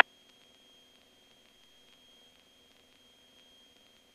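Faint hiss on a cockpit intercom/avionics audio feed, with a thin, steady high-pitched electronic whine and a weaker low hum; the aircraft engine is not heard.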